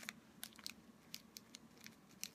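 Faint crinkling and small irregular clicks of a thin plastic sheet being folded and pressed by hand around a wire teaspoon frame.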